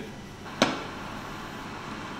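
A wooden cabinet door shutting with a single short knock about half a second in, followed by steady faint room noise.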